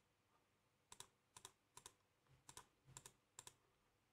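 Faint computer mouse clicks, about six or seven from about a second in, several coming as quick close pairs.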